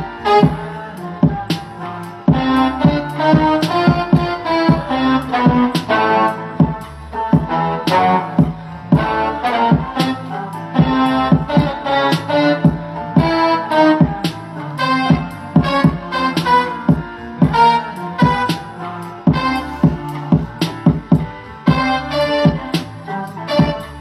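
Sampled music playing back in a beat-making session: a busy rhythm of sharp percussive hits under pitched keyboard-like notes, running without a break.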